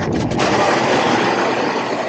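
Loud rushing of air blowing across the camera microphone while passing through a store doorway, with a few brief breaks just after the start, then steady.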